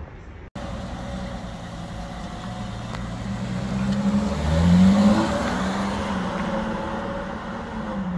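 A Ferrari's engine running, swelling in pitch and loudness to a peak about five seconds in, then settling back to a steady drone. The sound cuts in abruptly about half a second in.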